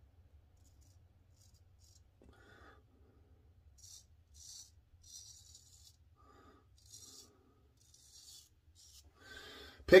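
Ribbon 1000 straight razor scraping through lathered stubble at the sideburn in a few short, faint raspy strokes, over a steady low hum.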